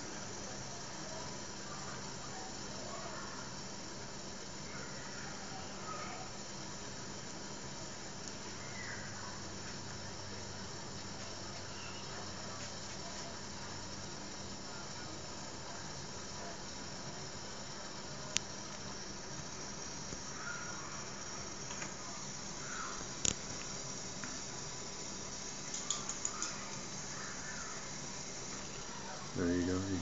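Steady hiss from a Wilesco D10 toy steam engine's fuel-tablet-fired boiler as its water comes to the boil with the valve closed and pressure building, with faint squeaks and a few sharp clicks.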